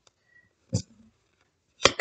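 A tarot card being drawn and put down on the tabletop: a short soft tap a little under a second in, then a sharp click near the end.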